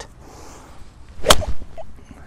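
Golf iron swung down and striking a ball off the turf: a short swish into one sharp crack of impact about a second and a quarter in.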